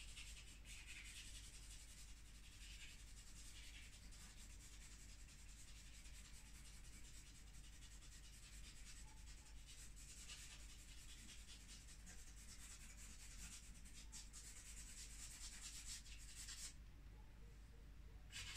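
Very faint rubbing and scratching strokes of an art medium worked across a sheet of paper, going on continuously.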